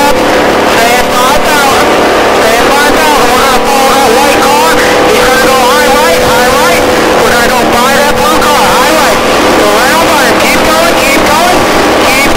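Stock car V8 engine heard from inside the cockpit, running very loud at a steady high pitch as the car laps at racing speed.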